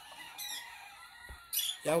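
A short, faint rooster squawk about half a second in, over a quiet background; a man's voice starts at the very end.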